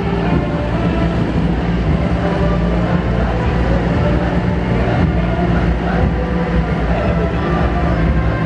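Heavy multi-axle missile transporter-launcher trucks driving past in a column, their diesel engines making a steady, loud low rumble with a constant hum.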